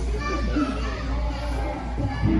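Background music and indistinct voices in a large room; the music's beat drops out for these seconds.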